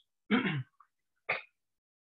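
Two short sounds from a man's voice over a video-call microphone: a brief voiced sound with a falling pitch about a third of a second in, then a shorter, sharper one just past a second.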